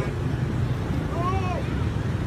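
Steady low outdoor rumble on a handheld microphone, with one short voice call that rises and falls about a second in.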